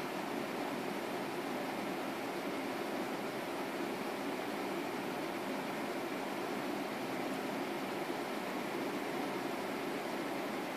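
Steady, even background hiss with no distinct sounds.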